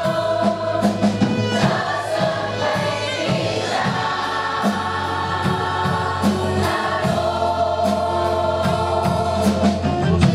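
A large choir, mostly women's voices, sings live in held chords over an accompaniment with a steady beat and a sustained low bass note.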